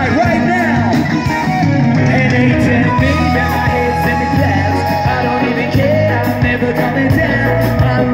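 Live rock band playing loud through a PA: electric guitars, bass and drums, with a singer's voice over them.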